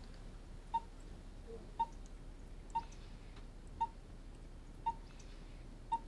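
Bedside heart monitor beeping its pulse tone, a short high beep at a steady rate of about one a second, six times.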